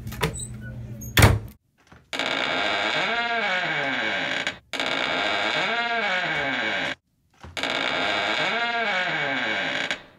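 A cabinet door knocks shut about a second in. Then a loud buzzing alarm tone sounds three times, each blast about two and a half seconds long with short gaps between, its tone wavering and swirling within each blast.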